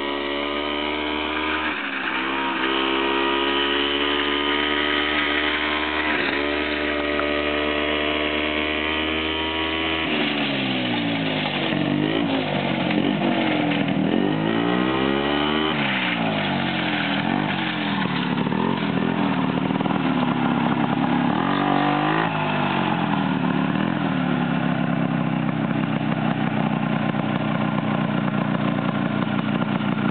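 Small two-stroke engine of a Ski-Doo Elan snowmobile running as the sled is ridden along a bare gravel road. Its pitch sweeps up and down several times as it comes close, about a third of the way in, and it runs steadily again for the rest.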